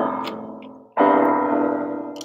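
Keyboard with a piano sound playing chords: one chord dies away, then a new chord is struck about a second in and left to ring. The chords are simple triads in the key of C, all on the white keys.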